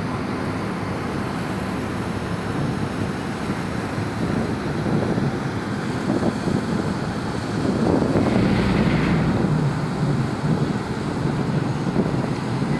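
Wind buffeting the microphone over the low rumble of a large ro-ro passenger ferry manoeuvring close alongside as it comes in to berth. The rumble swells louder about eight seconds in.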